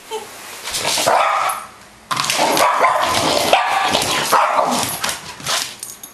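Cockapoo barking wildly and without pause: a short burst about a second in, then a long run of rapid, loud barks from about two seconds in, the dog going nuts at a model helicopter.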